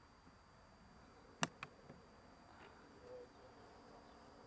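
Faint, distant buzz of a radio-controlled model biplane's motor overhead, with two sharp clicks close together about a second and a half in.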